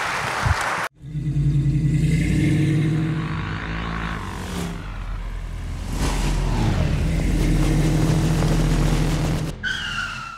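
Audience applause that cuts off suddenly about a second in. It is followed by an animated IDFA logo sting: a sound-design bed with a steady, engine-like low drone and sliding pitch sweeps, ending in a short falling squeal.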